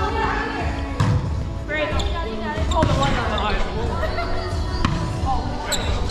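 Volleyball rally: the ball is struck several times, sharp slaps off players' forearms and hands about a second apart, with players' voices around the court.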